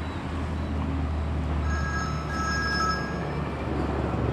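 Steady low rumble of road traffic. From about one and a half to three and a half seconds in, a mobile phone rings with a short electronic ringtone of a few high notes.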